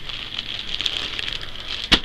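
Clear plastic bag around a folded T-shirt crinkling and crackling as it is handled, with one sharp click near the end.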